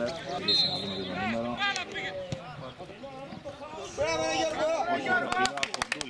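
Men's voices calling out on an open football pitch, with a short high whistle-like tone about half a second in and a quick run of sharp clicks near the end.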